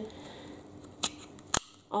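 Two sharp plastic clicks about half a second apart, the second louder, from a handheld vacuum's crevice tool being worked in the hands as its sliding brush insert is tried.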